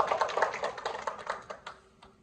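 A small audience clapping briefly, the scattered claps thinning out and dying away by the end.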